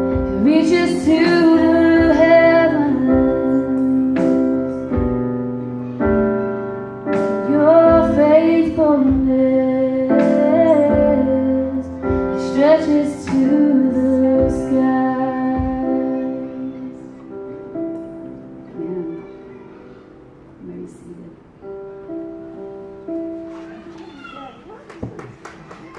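Live worship song: a woman singing over keyboard chords with a band. Her voice drops out about two-thirds of the way through and the keyboard plays on softly as the song fades to its end.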